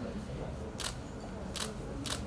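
Camera shutter clicks: two single shots about three-quarters of a second apart, over a low murmur of voices.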